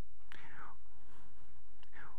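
A man whispering faintly under his breath into a headset microphone, a short breathy sound about a third of a second in that starts with a light click, over a steady low hum.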